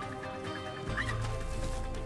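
Documentary music score of sustained tones, with a deep bass note coming in about a second in. A brief high animal call sounds over it.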